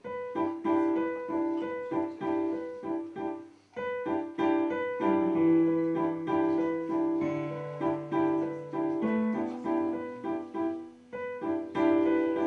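Stage keyboard with an electric piano sound playing a pattern of short repeated notes. The pattern breaks off briefly about four seconds in, then resumes, with lower held bass notes joining a second later.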